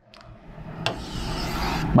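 Marker tip rubbing on a writing board while a circle is drawn. It is a rough scraping noise that grows louder, with a short click about a second in.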